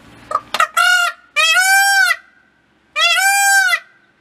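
Indian peafowl (peacock) calling loudly: a short call about half a second in, then two long calls, each rising and then falling in pitch.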